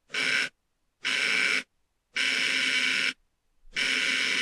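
A mechanical relay wired as a NOT gate with its output fed back to its own coil, buzzing as its contacts chatter in self-oscillation. It comes in four bursts of half a second to a second each, with short silences between them.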